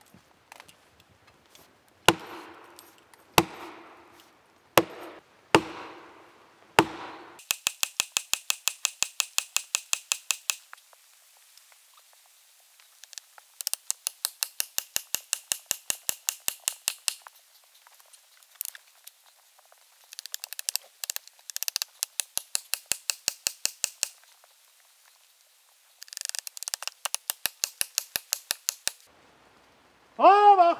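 An axe striking plastic felling wedges in the back cut of a spruce, driving them in to tip a back-leaning tree over: five heavy blows about a second and a half apart, each with a short ring, then four runs of rapid, evenly spaced, thinner strikes at about seven a second.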